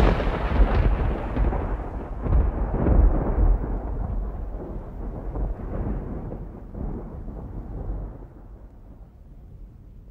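Deep rolling rumble of thunder, already going and swelling again about three seconds in, then slowly dying away until it is faint by the end.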